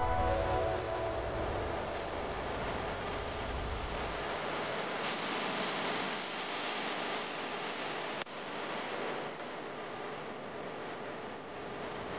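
Steady, even rushing noise with no tone or beat, like surf or wind, as the last sustained notes of music die away in the first second; a brief dropout about eight seconds in.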